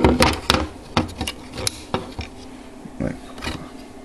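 Hard plastic toy playset handled close to the microphone: a rapid, irregular run of small clicks and knocks as fingers move over and shift its plastic pieces.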